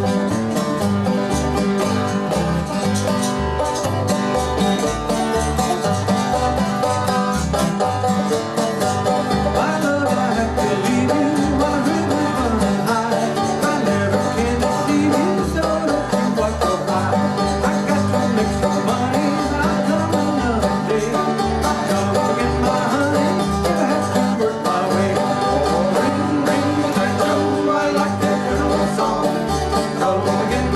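A string band playing an old-time instrumental tune on banjo, acoustic guitar and plucked upright bass, with the bass keeping a steady beat under the banjo and guitar.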